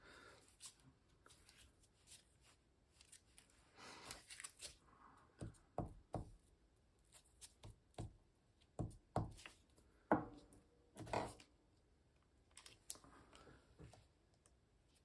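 Faint handling sounds of paper collage work: scattered light taps and clicks on the table, brief rustles of paper, and a glue stick rubbed over a small paper scrap.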